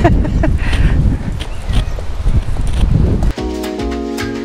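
Wind buffeting a wearable camera's microphone with a low rumble, with footsteps on pavement. About three seconds in, background music with steady held chords starts.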